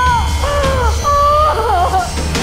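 Dramatic background score: a low drone under a high, wavering, wailing melody line that breaks off and resumes several times.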